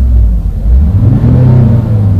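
Synthetic engine sound from Renault R-Link's R-Sound feature, played through the car's cabin speakers: an engine note revving up and falling back, as the throttle is blipped.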